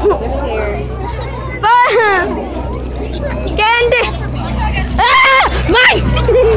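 Young children shrieking and squealing excitedly in high-pitched cries, loudest about two, four and five seconds in, over a steady low hum.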